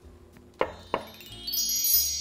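Two light clicks, then a shimmering chime sound effect that swells and rings out slowly, marking a time-skip transition while the sauce reduces.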